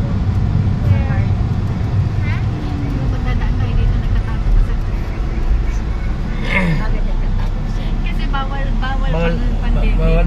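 Steady low rumble of a vehicle's engine and tyres heard from inside the cabin while driving on a paved road.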